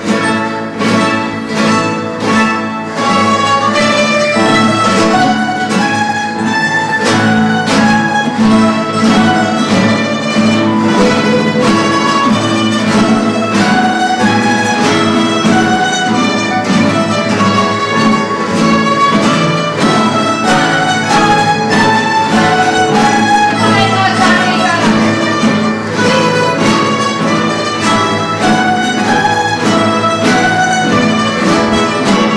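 Aragonese jota played by a rondalla of plucked strings: guitars, bandurrias and laúdes strumming and tremolo-picking the instrumental opening of the tune, steady and loud throughout.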